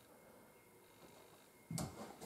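Near silence: quiet room tone in a small room, broken near the end by a single brief thump.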